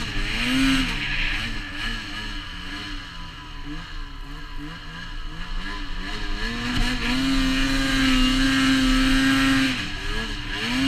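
Ski-Doo Summit 600 E-TEC two-stroke snowmobile engine, fitted with an MBRP trail-can exhaust, under load in deep powder. It revs up and down with short stabs of throttle, then climbs and holds at high revs for about three seconds before dropping off near the end.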